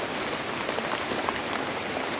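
Heavy rain falling steadily through tree foliage, with many small individual drop ticks scattered through it.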